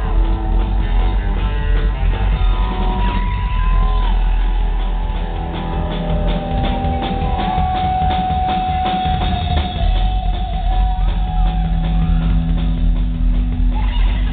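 Live rockabilly band playing an instrumental passage: electric guitar lead over upright double bass and drum kit, with a long held guitar note in the middle. Heard from the crowd through a camera microphone.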